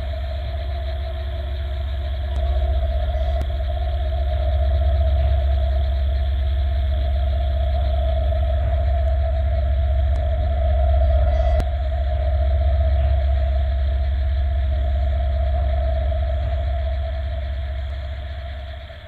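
Horror background-score drone: a deep rumble under one steady held tone, swelling slightly and easing off near the end.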